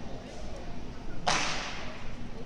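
A single sharp swish a little over a second in, from a Chen-style tai chi performer's quick movement, over low hall murmur.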